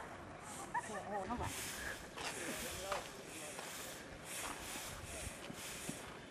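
Faint voices of people talking at a distance, with several short bursts of rushing noise between them.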